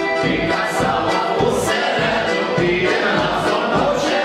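A group of guests singing a Ukrainian folk song together at the table, many voices at once, accompanied by an accordion.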